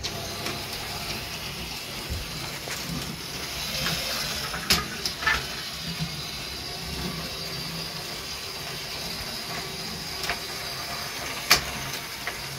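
LEGO 6399 monorail train's 9-volt motor running as its gear cog drives along the toothed monorail track: a steady mechanical whirr, with a few sharp clicks about five seconds in and near the end.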